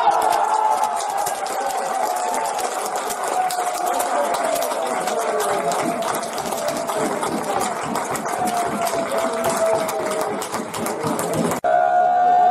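Spectators clapping rapidly after a goal, with a long steady tone slowly falling in pitch underneath. The sound cuts off abruptly near the end.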